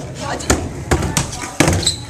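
Skateboards on a concrete skatepark floor: several sharp clacks of decks popping and landing, spread unevenly over two seconds, over the rumble of rolling wheels.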